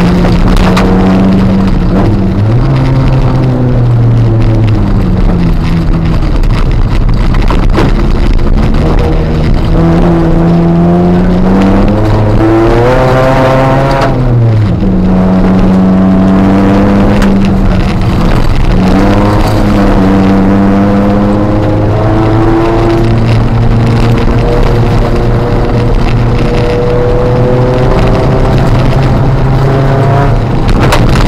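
Ford Fiesta ST150's 2.0-litre four-cylinder engine heard from inside the cabin, revving up and dropping back through the gears at rally pace, with one long climb in pitch about thirteen seconds in, cut off by an upshift. Under it runs a steady rush of tyre and road noise on wet gravel.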